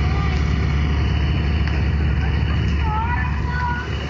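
Soundtrack of a phone video of a car on fire beside a road, played back into the room: a loud, steady low rumble with a few faint voices near the end.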